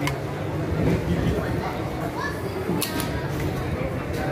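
Background chatter of voices around a dining table, with two sharp clicks, one at the start and one near three seconds in.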